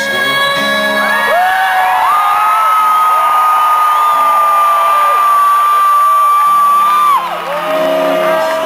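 Live acoustic rock performance: strummed acoustic guitar under singing, with one long high note held for about five seconds, while audience members whoop and shout.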